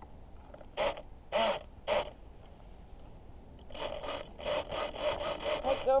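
Rasping, scraping strokes close to the microphone: three short scrapes about a second in, then a quick run of about four strokes a second from the middle on.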